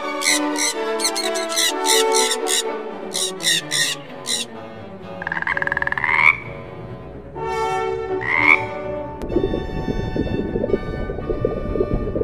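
A frog calling twice near the middle, each call a rising, rattling croak, the first about a second long and the second shorter. Short, sharp bird calls come in quick succession during the first few seconds. Background music plays throughout.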